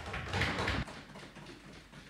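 Members of parliament knocking on their wooden desks in approval as a speech ends: a dense flurry of knocks for under a second, then scattered taps dying away.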